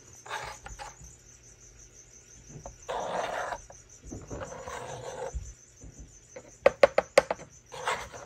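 Hard plastic dog treat puzzle being handled, with rustling and sliding in the middle and then a quick run of about five sharp plastic clicks near the end as its pieces are knocked or moved.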